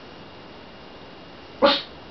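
A pug gives one short, sharp bark near the end.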